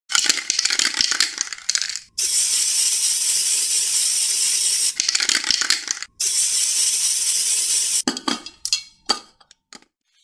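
Intro sound effects: about two seconds of rattling, a steady hiss lasting nearly three seconds, a second short rattle and another steady hiss, then a few separate clicks and taps that die away near the end.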